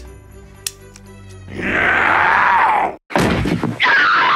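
Horror-film soundtrack: after a quiet, eerie opening, a girl's harsh, strained scream falls in pitch and cuts off abruptly, followed by a short crash and another falling scream near the end.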